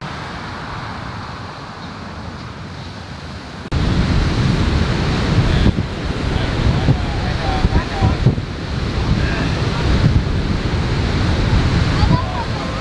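Wind and breaking surf on a lakeshore: a quieter stretch of wind at first, then, about four seconds in, an abrupt jump to much louder gusty wind buffeting the microphone over the waves.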